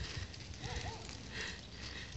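Faint footsteps over grass and gravel, a soft crunch coming back about every two-thirds of a second.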